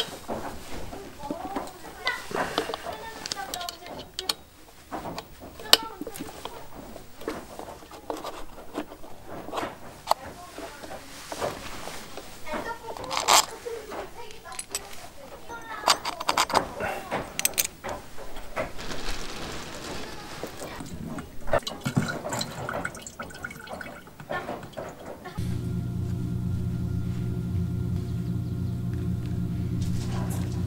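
Repeated clicks and knocks of plastic and metal parts as the air-filter cover is taken off the two-stroke engine of a Cifarelli mist blower. About 25 seconds in, a steady low hum made of several held tones starts and continues.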